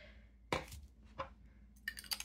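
Fountain pen parts clicking and tapping as they are picked up and handled on a wooden desk: one sharp click about half a second in, a couple of softer ones after, and a quick run of small clicks near the end.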